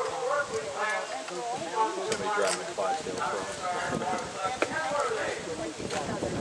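Indistinct voices of people talking, with a single sharp click about four and a half seconds in.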